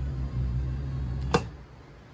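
Electric motor of a camper's power awning running with a steady low hum as the awning retracts, then stopping with a sharp click just over a second in.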